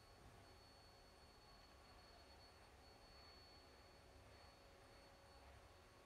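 Near silence: room tone with a faint steady hiss and a thin high whine.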